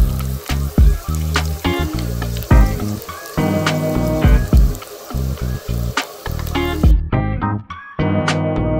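Oil sizzling steadily in a frying pan as gyoza-wrapper rolls fry, under background music with a plucked bass line. The sizzle cuts off suddenly about a second before the end, leaving only the music.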